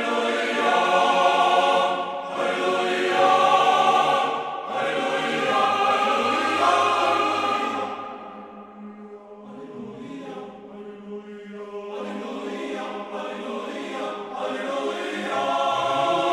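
A choir singing slow chant in long held notes. It drops to a quieter passage about halfway through, then swells again.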